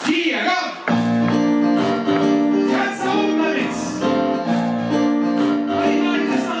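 A stage keyboard set to a piano sound starts playing about a second in, with held chords and a singing voice over them.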